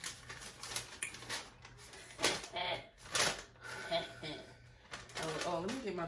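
Sheets of paper being handled and rustling, in a run of short crackles, the loudest about two and three seconds in.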